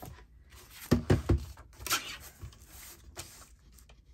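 Plastic Arteza paper trimmer set down on a cutting mat, a few quick knocks about a second in, then paper rustling as a page is slid into it and lined up, with a few light clicks.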